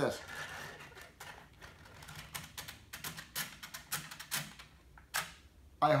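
Recoil starter on a Stihl string trimmer slowly drawing its pull rope back in: a faint rustle, then irregular clicks and ticks, the sharpest near the end. The rewind is sticky from a dry starter spring, probably with a little rust inside.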